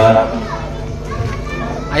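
A man speaking into a microphone ends a phrase, then a pause of about a second and a half filled with background chatter and children's voices.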